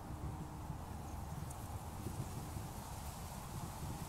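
Faint outdoor ambience: a steady, uneven low rumble with a faint hum.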